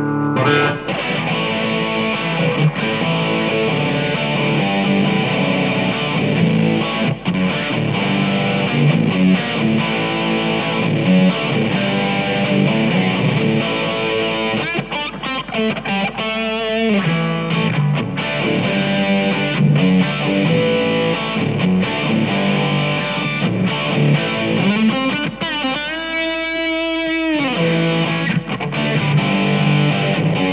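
Electric guitar played through a Marshall Code 25 modelling amp on its JVM Drive overdrive preset with the gain at maximum: distorted chords and lead lines, with long held, wavering notes about 16 and 26 seconds in.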